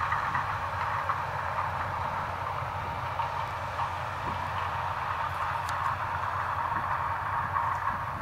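New Holland CX combine harvester running steadily under load while harvesting maize with its Geringhoff corn header, an even mechanical drone of engine and threshing machinery.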